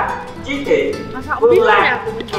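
Voices talking and exclaiming over background music.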